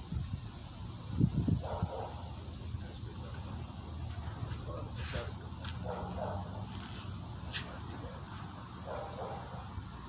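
Three short animal calls a few seconds apart over a steady low rumble. A low thump about a second in is the loudest sound, and a few sharp clicks come near the middle.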